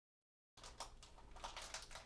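Faint handling noise starting about half a second in: light clicks and rustling of a jacket as a person moves back from the camera and settles into a chair.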